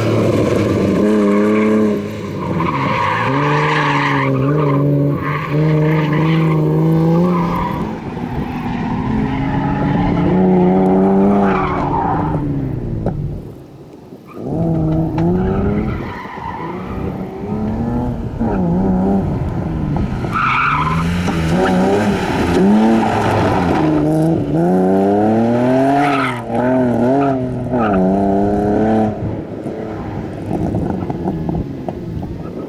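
BMW E36 engine revving hard, its pitch climbing and dropping again and again as the car is thrown through a tyre-marked course, with tyres squealing as it slides. About halfway through the engine falls quiet for a moment before pulling hard again.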